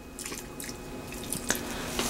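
Gasoline poured from a plastic jerry can down the open carburetor of a Chevy 454 V8, a faint trickle and splash with a light tick about one and a half seconds in.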